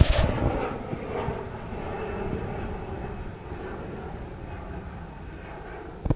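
Jet airliner's engines on climb-out after take-off: a steady rumble that slowly fades as the plane climbs away. A few loud knocks of the phone being handled come right at the start.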